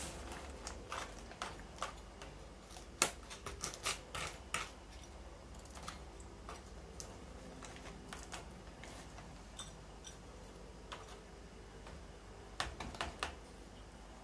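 Light scattered clicks and scrapes of potting soil being piled and pressed around pineapple crowns in a plastic pot with a small hand fork and fingers, the sharpest click about three seconds in and a few more close together soon after and near the end.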